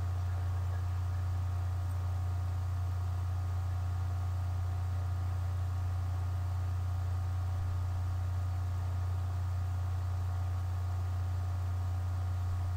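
Steady low hum with a few faint, steady higher tones above it and a light hiss, unchanging throughout: the background noise of a poor-quality webcam stream's audio, with no speech.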